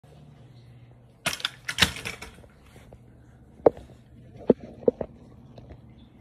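Handling noise from a phone camera being set down on the floor: a quick burst of clattering clicks, then three separate sharp knocks.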